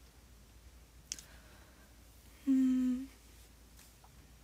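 A woman hums one short, steady, level note, lasting about half a second, a little past the middle. The rest is a quiet small room with a faint click about a second in.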